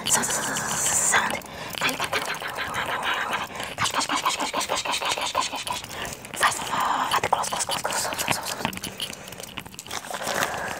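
Close-miked ASMR sounds: fast hand movements and brushing near the microphone, with breathy mouth sounds, making a dense, irregular stream of quick clicks and rustles.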